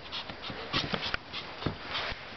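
A young Pomeranian giving several short yaps in quick succession.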